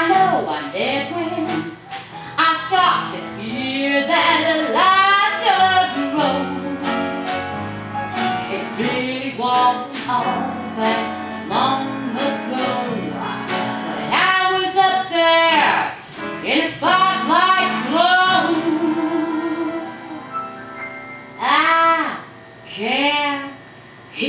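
A woman singing a show tune over instrumental accompaniment with a steady beat, holding some notes with vibrato.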